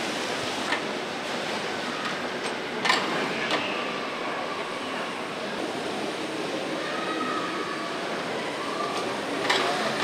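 The Smethwick Engine, a Boulton & Watt steam beam engine, running on steam: a steady noise with a few sharp clanks, the loudest about three seconds in and just before the end.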